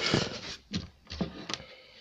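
Handling noise from a camera being laid down: a few sharp knocks and rubbing against the microphone in the first second and a half, fading to quiet near the end.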